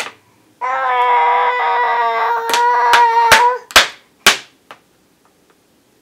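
A baby's voice holding one long, steady-pitched 'aah' for about three seconds. Near its end come five sharp knocks on the plastic high-chair tray.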